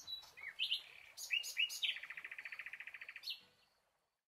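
A songbird singing: a few short, clear notes that slide down in pitch, then a fast trill lasting about a second and a half, ending on a higher note.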